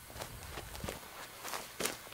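Footsteps on dry dirt and scattered straw, several irregular steps, with a louder scuff near the end.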